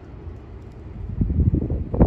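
Wind buffeting the microphone: an uneven low rumble that grows louder about a second in.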